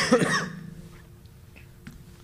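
A person coughing: one loud cough right at the start that dies away within about half a second.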